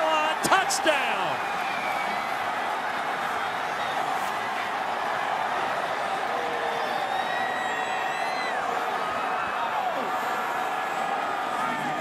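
Stadium crowd cheering steadily after a touchdown, a dense wash of many voices with no single voice standing out.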